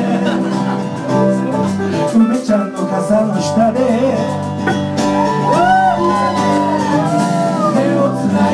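Live band playing: strummed acoustic guitar and electric guitar over a drum kit, with a singer at the microphone.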